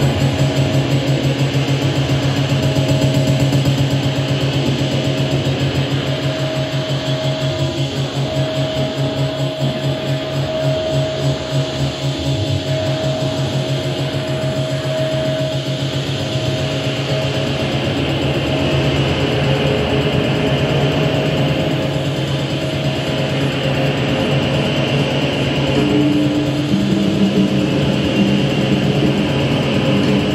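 Improvised electronic music from a synthesizer rig: layered sustained drones over a fast low pulsing. A high held tone fades out about halfway through, and new lower tones come in near the end.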